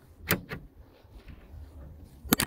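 Two sharp plastic clicks a fraction of a second apart, as a plastic wheel trim is pressed onto a car's steel wheel and its clips push into place.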